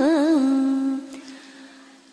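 A voice drawing out the last note of a chanted line of Vietnamese verse: the pitch wavers up and down a few times, then settles on a lower held tone that fades away from about a second in.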